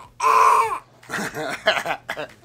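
A young girl's loud, excited shriek lasting about half a second, followed by more high children's voices and squeals.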